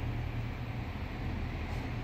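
Steady low hum inside the cabin of a running 2016 Toyota Prius, shifted into park.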